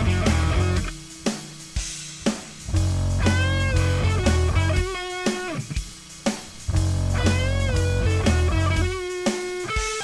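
Guitar music: a lead guitar bends its notes up and down over a heavy low bass part that drops in and out.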